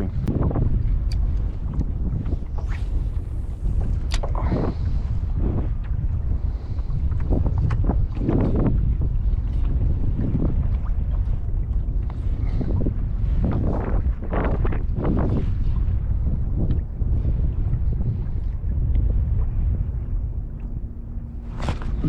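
Wind rumbling on the microphone of a kayak out on choppy open water, with water slapping against the plastic hull now and then.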